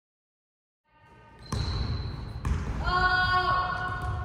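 A basketball bouncing on a gym floor in a large echoing hall, with voices breaking into long, drawn-out shouts in the second half.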